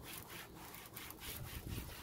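Applicator pad wiping plastic trim dressing onto a car's black plastic lower bumper valance in quick back-and-forth strokes, about four to five a second. It is a faint, even rubbing, and the dressing is gliding on easily, not grabby.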